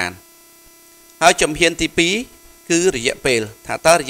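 Steady electrical hum, a single droning tone with faint overtones, heard on its own for about the first second and carrying on under the talking that follows.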